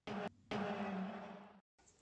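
A camera-themed transition sound effect. It opens with a short burst, then after a brief gap a longer noisy sound with a low steady hum fades out over about a second.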